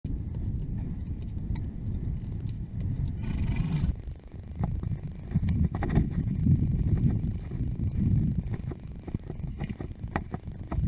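Low rumbling wind buffeting a camera microphone carried on horseback, with scattered small clicks and knocks and a brief hiss a little over three seconds in.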